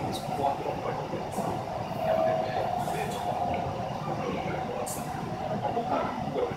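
Ordinary passenger train running along the track, heard from inside the carriage: a steady rumble with a humming tone and a few brief high ticks.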